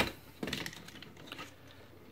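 Faint clicks and taps of a plastic Omnigonix Spinout robot figure being picked up and handled, with one sharper click about half a second in.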